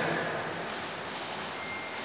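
A pause in a man's speech in a large reverberant room: his voice's echo dies away into steady background hiss. Near the end a brief, thin, high steady beep sounds.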